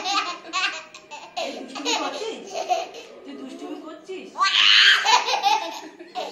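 A toddler laughing in repeated quick bursts, loudest about four and a half seconds in, with adult voices talking and laughing alongside.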